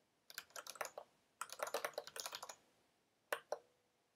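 Typing on a computer keyboard: two quick runs of keystrokes with a short pause between, then two louder single key presses about three and a half seconds in.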